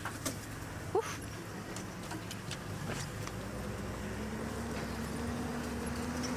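Safari game-drive vehicle's engine running at low speed as it drives off-road through grass, its note climbing slightly in the second half, with a few light knocks and clicks.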